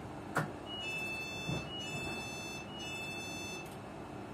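Passenger train's door warning alarm: a repeating two-note electronic beep, a short higher note followed by a longer lower one, three times over about three seconds. A sharp click comes just before the beeping starts.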